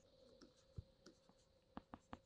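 Near silence with a few faint ticks of a stylus on a writing tablet as handwriting is added, over a faint steady hum.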